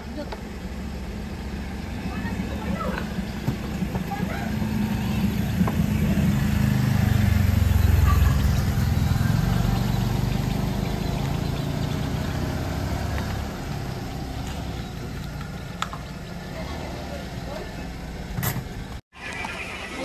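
Kia Picanto hatchback's engine running, a low rumble that builds over the first few seconds, is loudest around the middle, then eases off again.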